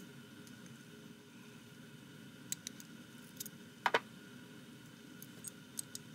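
A few faint clicks and light taps of small metal hand-plane parts being handled, over a low steady background hum; the sharpest is a quick double click near the middle.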